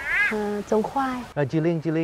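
Speech: a woman speaking Vietnamese, then after a cut a man speaking. Right at the start there is a short, high-pitched call that rises and falls, well above the pitch of the woman's voice.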